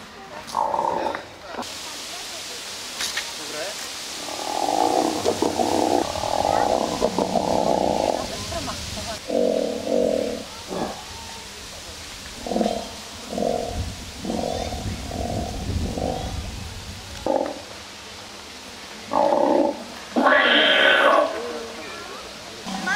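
Recorded dinosaur sound effects from the park's animatronic models: a series of roars and growls played through loudspeakers, with a run of short grunts in the middle and the loudest, brightest roar near the end.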